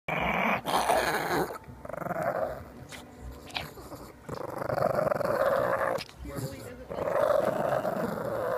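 Small Chihuahua-type dog growling in about four long, rough bouts with short breaks between them.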